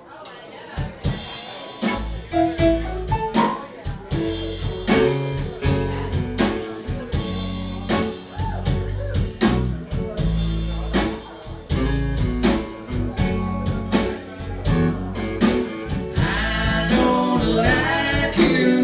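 A live band starts a song about a second in, with drums and electric guitars playing a steady beat. Singing comes in near the end.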